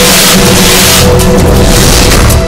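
Loud theme music with held notes over a heavy bass pulse; a loud rushing swell washes over it during the first second.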